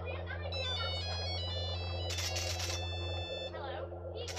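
A quick run of high electronic beeping tones, like a phone ringtone, in the first half, then a short burst of hiss about two seconds in and a brief voice sound near the end, over a steady low electrical hum.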